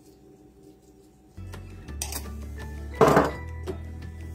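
Soft background music that grows louder about a second and a half in, with two sharp clinks of glass about two and three seconds in, from small glass spice jars and a glass mixing bowl.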